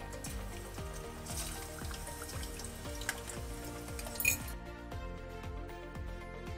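Background music with a steady beat over pork belly sizzling in hot oil in a saucepan. There is a sharp crackle a little after four seconds, and the sizzle stops suddenly soon after while the music carries on.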